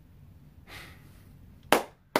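Quiet room tone with a faint breath, then a single sharp hand clap near the end.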